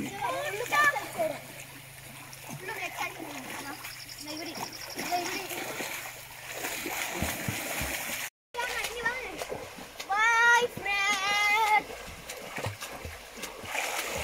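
Water splashing as people bathe in a river, under voices talking and shouting; the sound drops out for a moment just past the middle. About ten seconds in come two loud, drawn-out calls with wavering pitch.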